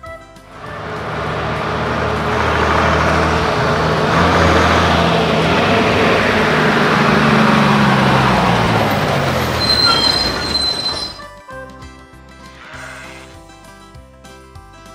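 Heavy truck engine sound effect: a loud, noisy rumble lasting about ten seconds, its pitch falling near the end, after which quiet children's music returns.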